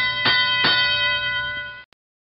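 Field signal sound marking the start of the driver-controlled period of a FIRST Tech Challenge match: a bell struck three times in quick succession, ringing on as one steady chord and then cut off suddenly near the end.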